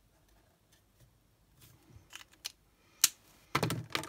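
Light plastic clicks and taps of an alcohol marker being handled, ending in one sharp click just after three seconds in as the marker is capped and set down on the desk.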